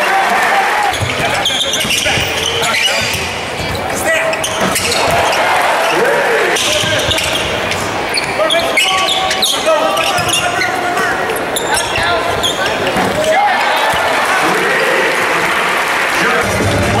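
Basketball game sounds in a large arena: a ball dribbled on a hardwood court, with indistinct shouts and talk from players and spectators.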